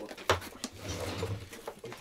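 Rummaging through tools in a workbench drawer: a few sharp clacks and clinks of tools knocking together, the loudest about a third of a second in. A man's low hum or murmur follows underneath.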